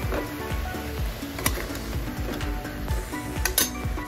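Bottle gourd, herbs and green chillies sizzling in hot oil in a pressure cooker as a metal ladle stirs them, with two sharp knocks of metal, about a second and a half in and near the end.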